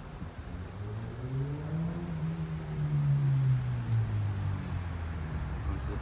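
A motor vehicle's engine going by nearby: its note rises and then falls, loudest about halfway through, over steady outdoor background noise.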